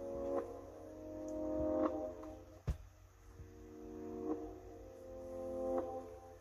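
Reversed, slowed-down recorded samples playing back as sustained chords. Each swells up in level and breaks off, twice over. A single sharp click sounds near the middle.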